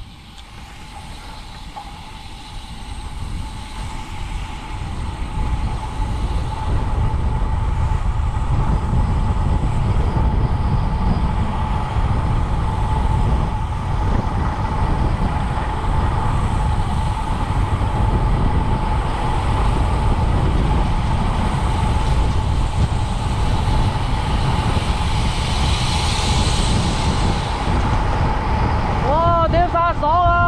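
Wind rushing over the microphone of a bicycle rider's camera on a fast downhill run, swelling over the first several seconds as speed builds and then holding steady.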